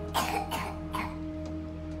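A woman clearing her throat with a short cough, two quick bursts within the first second, over a steady soft background music bed.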